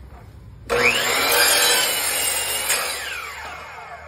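Miter saw starting up under a second in and cutting through a wooden block at an 11-degree bevel; after the cut the blade's whine falls as it spins down and the sound fades.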